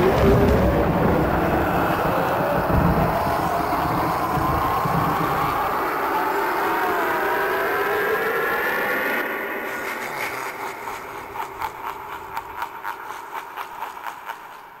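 Harvester of Souls animatronic's soul-sucking sound effect from its built-in speaker: a low rumbling whoosh under eerie wavering tones that slowly rise in pitch. About nine seconds in it drops to a quieter run of quick pulses, about three a second, that fade out near the end.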